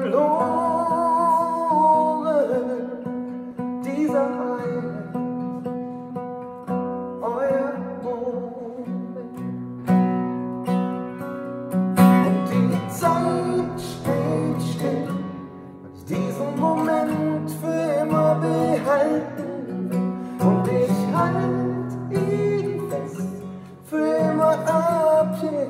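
Live steel-string acoustic guitar accompanying a male singer, with sung phrases over the guitar in places and short stretches of guitar alone, in a large church.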